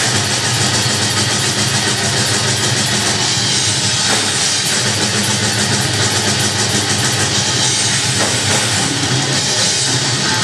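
Live heavy metal band playing at a steady loud level: distorted electric guitars, bass guitar and drums with cymbals, with no break.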